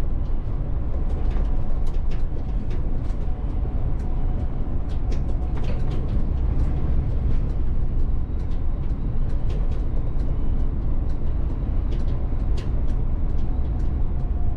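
Cab of a VDL city bus driving at speed: a steady low rumble of road and drive noise, dotted with many small sharp ticks.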